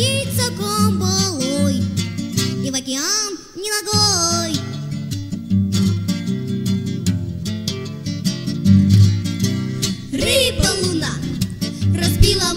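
A bard song played on acoustic guitar with singing. The voice drops out for a guitar passage in the middle and comes back near the end.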